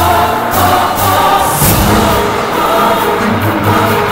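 Dramatic background music with choir-like singing over sustained tones and recurring percussive accents, the kind of score used in a TV serial.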